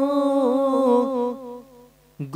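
A man's voice holding one long, slightly wavering sung note at the end of a line of melodically recited Gurbani. The note trails off about a second and a half in.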